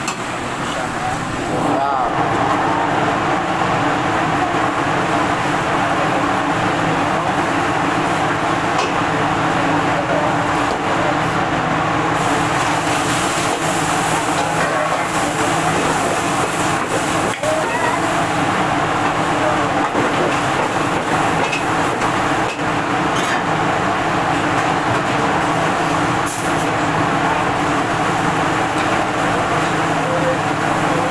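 Steady roar of a gas wok burner and kitchen extraction hood, stepping up louder about two seconds in, over food sizzling in oil. A metal ladle knocks and scrapes against the steel wok a few times.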